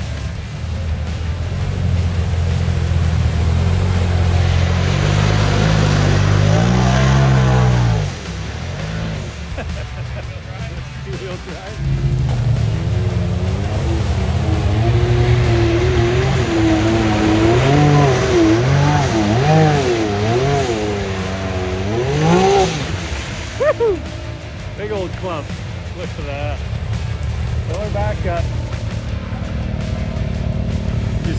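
Engines of lifted side-by-side UTVs revving through a deep mud hole, the pitch rising and falling with the throttle. The sound drops off about eight seconds in and picks up again about four seconds later.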